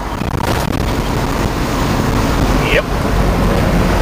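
Steady road and wind noise inside a Suburban cruising at highway speed: a constant deep rumble under a broad hiss.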